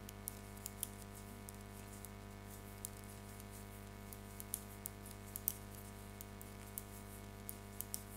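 Metal knitting needles clicking faintly and irregularly, a few small taps a second, as knit stitches are worked, over a steady low hum.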